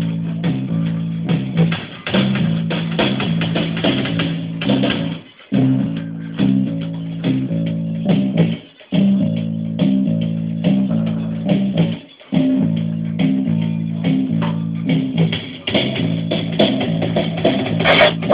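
Live experimental electronic music from circuit-bent toys and electronics: a looping low bass line of stepping notes with clicky percussion over it. It cuts out briefly three times, near the second third of the way through, about halfway, and about two-thirds through.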